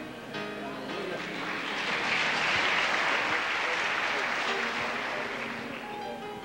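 Congregation applauding over music. The applause swells about a second and a half in and eases off near the end.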